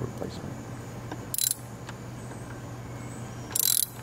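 Ratchet wrench on a long socket extension clicking in two short runs, a brief one about a second and a half in and a longer one near the end, as the bolt of the crankshaft position sensor on the Mercedes engine is worked by feel. A steady low hum runs underneath.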